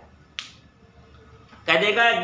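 A single short, sharp click about half a second into a quiet pause, with a man's speech resuming near the end.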